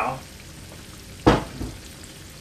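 Flour-coated chicken drumsticks shallow-frying in rapeseed oil in a frying pan, a steady sizzle. A single sharp thump comes a little past halfway, with a softer one just after.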